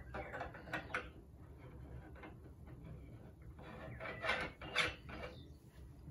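Faint rubbing and small knocks of a turned wooden walking stick's top section being twisted and forced into its lower section, with two louder bursts a little past four seconds in.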